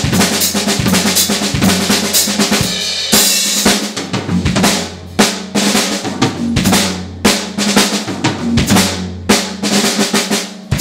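Drum kit played solo: quick right-hand, left-hand and bass-drum strokes running over snare and toms. A cymbal crash rings out about three seconds in, then the playing breaks into sparser, accented hits.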